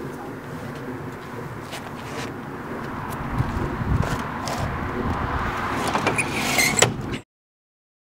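Glass sliding door being slid open, with several sharp clicks and knocks from its frame and handle over a steady rushing background; the sound cuts off suddenly about seven seconds in.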